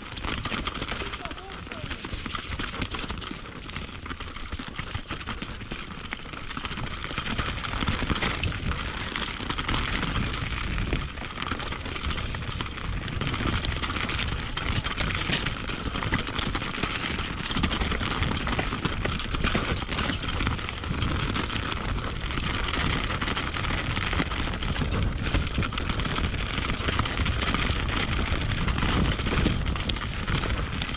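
Specialized Enduro Evo mountain bike descending a dry, rocky dirt downhill trail, heard on a GoPro: continuous tyre rumble over dirt and stones, with the bike rattling and wind on the microphone. It grows louder from about eight seconds in as the speed picks up.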